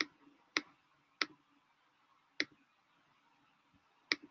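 Computer mouse clicking: four sharp single clicks, the first three about half a second apart and the last after a longer pause.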